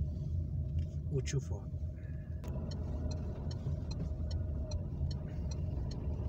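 Car driving slowly, heard from inside the cabin: a steady low drone of engine and road noise. About halfway through there is a single click, followed by faint, regular ticking about twice a second, like a turn signal as the car takes the roundabout.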